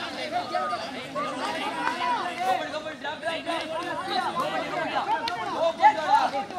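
Many voices chattering and calling out over one another, the babble of players and onlookers around a kho kho court, with a louder shout near the end.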